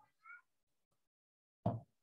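A short, faint high-pitched call about a third of a second in, then a brief, louder thump near the end.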